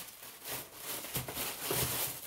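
Tissue paper wrapping rustling as it is handled and pushed into a cardboard shoe box.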